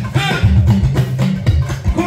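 Live Yoruba drum music led by a talking drum struck with a curved stick, its strokes stepping between a few pitches in a quick rhythm, with a second hand drum playing along.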